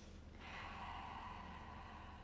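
A person's single long, faint breath, lasting about two seconds and starting about half a second in, over a low steady room hum.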